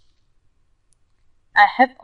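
Near silence for about a second and a half, then a woman starts speaking.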